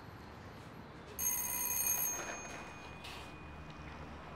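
An electronic doorbell rings once, about a second in: a bright tone that sounds for about a second and fades out over the next second.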